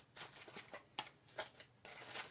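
Faint handling of a small cardboard box being opened by hand: light rustling of card and a few short clicks, the sharpest about a second in.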